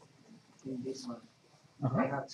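Brief, indistinct speech: a couple of short murmured phrases with pauses between, too quiet for the words to be made out.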